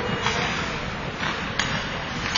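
Ice hockey play on the rink: a steady scrape of skates and sticks on the ice, with one sharp knock from the play about one and a half seconds in.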